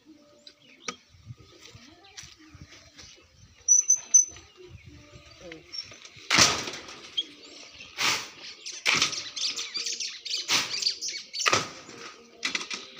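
Outdoor yard work: a series of loud, rough scraping and rustling noises about once a second through the second half. A bird chirps briefly about four seconds in.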